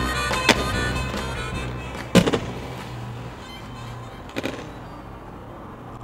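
Background music fading down, with three sharp impacts of aggressive inline skates landing on concrete: about half a second in, about two seconds in (the loudest), and about four and a half seconds in. The sound cuts off abruptly at the end.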